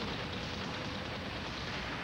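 Movie-trailer sound design: a steady, dense rush of noise with a low rumble under it, without speech or a clear tune.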